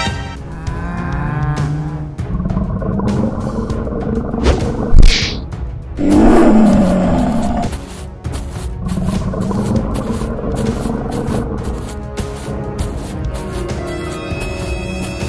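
Dramatic background music with a regular beat, and a lion's roar sound effect about six seconds in that lasts about a second and a half, just after a short sharp hit.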